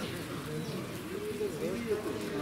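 A bird cooing in low, repeated rising-and-falling notes, with people talking in the background.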